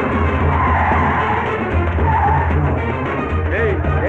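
Film background score with a heavy pulsing low drum, over a bus pulling up and braking with a short squeal of tyres.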